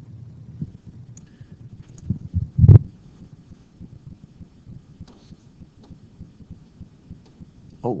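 Low room noise, broken by a few soft low knocks that lead to one heavy thump about three seconds in, followed later by a few faint clicks.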